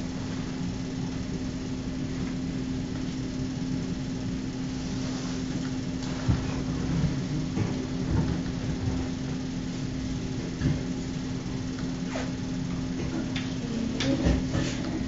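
Room tone: a steady low hum with a few faint knocks scattered through it.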